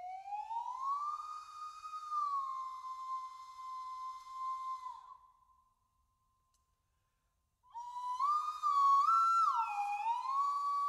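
Slide whistles playing slow glissandi. A pure whistling tone slides up, holds, and fades away about five seconds in. After a short silence, another phrase enters near the end, stepping and sliding up and down in pitch.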